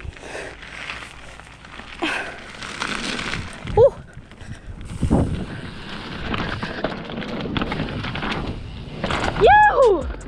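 A mountain bike running fast down a dirt trail: tyre and wind noise on the bike-mounted camera's microphone, with thumps and rattles as the bike hits the ground, the heaviest about five seconds in. The rider lets out a short whoop near the end.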